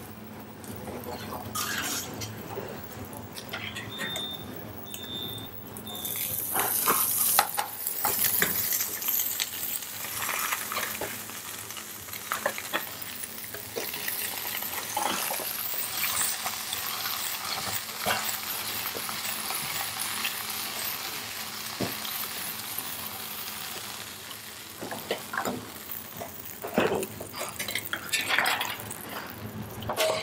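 Artichoke pieces frying in hot oil in a nonstick pan, a steady sizzle that gets louder about seven seconds in, with the pan tossed and knocking lightly on the hob now and then.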